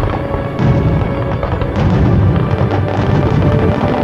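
Fireworks going off over music: a heavy boom about half a second in and another near two seconds, then dense crackling.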